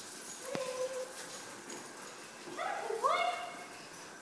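A dog whimpering: a faint short whine about half a second in, then two short rising whines about two and a half to three seconds in.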